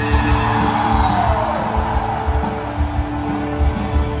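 A rock band playing live at full volume: a steady low beat under held chords, with a falling sweep in pitch about a second in.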